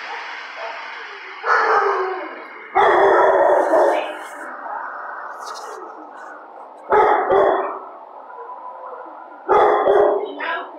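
A dog barking in four loud bursts, with echo trailing after each in a kennel run.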